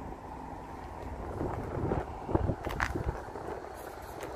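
Wind buffeting the microphone over steady outdoor background noise, with a few soft knocks about two to three seconds in.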